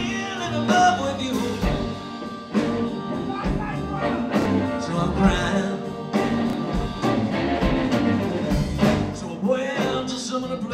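Live blues band playing: electric guitar, electric bass, grand piano and drums, with a bending lead line above them.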